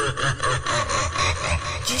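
Intro of a Brazilian funk montagem: a heavily processed, stuttering laugh sample over rapid low bass pulses, growing brighter near the end, with a spoken 'DJ' producer tag at the very end.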